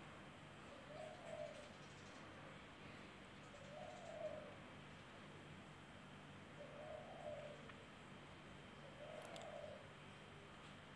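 Faint calls of a bird: four short hoots that rise and fall in pitch, about three seconds apart, over a near-silent background.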